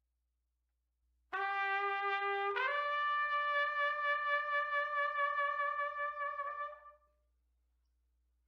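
Solo trumpet played through a Monette Classic B4LD S1 Slap mouthpiece. About a second in, a short lower note steps up to a long held higher note with a slight vibrato, which fades out near the end.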